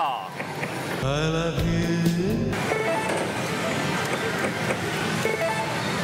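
Pachislot hall din: the electronic jingles and beeps of slot machines over the hall's background music. About a second in, a rising electronic sound effect plays for about a second and a half.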